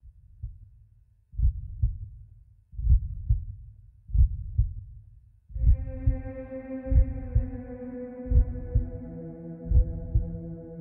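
A slow heartbeat sound: low double thuds (lub-dub) repeating about every one and a half seconds. About halfway through, sustained musical tones join in over it.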